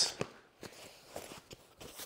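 Faint handling sounds of a padded fabric carrying case being lifted: a few soft, scattered knocks and rustles.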